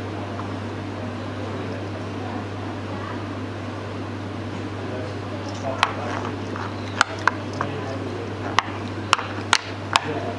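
Sharp little clicks and snaps from hands working thick latex elastic cotton as it is wound tightly round a frozen fish bait, coming several times in the last four seconds, over a steady low hum and room noise.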